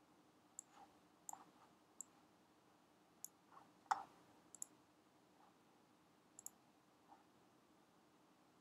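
Faint, scattered clicks of a computer being operated, about eight in all at uneven intervals, the loudest about four seconds in, over a faint steady hum.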